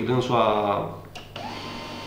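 A man speaking Romanian, then a pause of about a second in which only a faint steady hum is heard.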